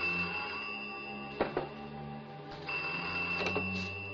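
Desk telephone ringing with a buzzing bell: one long ring of about two and a half seconds, a short break, then a second, shorter ring, over background music.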